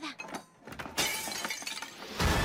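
A crash of shattering glass about a second in, sudden and then dying away over about a second, after a few faint clicks.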